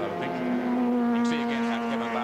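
Racing touring car engine running flat out, a steady high-revving note that drops to a lower pitch shortly after the start and then holds.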